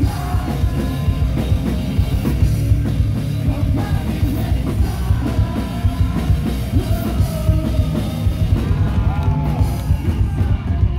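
Live punk rock band playing loud through a PA: drum kit, electric guitar and bass under a vocalist singing and shouting into the microphone.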